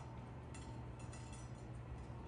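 Quiet room tone: a faint, steady low hum with no distinct event.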